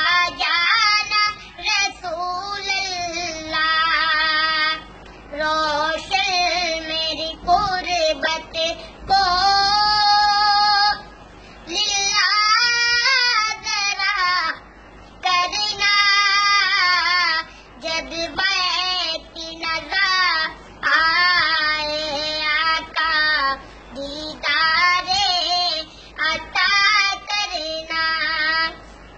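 A young boy singing a naat, a devotional poem in praise of the Prophet Muhammad, unaccompanied, with wavering, ornamented pitch in phrases of a few seconds separated by short breaks.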